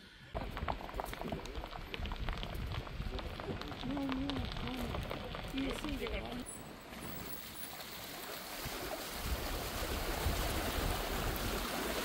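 Faint distant voices over outdoor background, then from about halfway a steady rushing of running water across a low concrete road crossing, with a low rumble underneath near the end.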